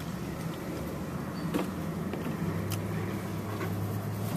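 Car engine idling steadily, heard from inside the cabin, with a couple of short, sharp taps partway through.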